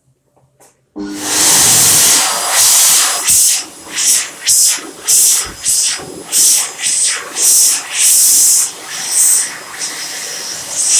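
Warner Howard Airforce hand dryer starting about a second in and blowing a loud, hissing jet of air that surges and dips again and again as hands move in and out of the airflow.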